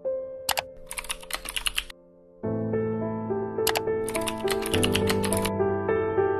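Computer keyboard typing in two quick runs of keystrokes, each led by a pair of sharper clicks, as a username and then a password are entered. Gentle music comes in between the two runs.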